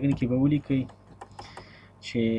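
A man's voice speaking briefly, then a run of light computer-keyboard keystrokes, quieter clicks in the second half.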